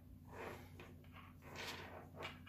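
Faint handling noise: soft, brief rustles as fingers turn a small plastic head torch tangled in its USB cable.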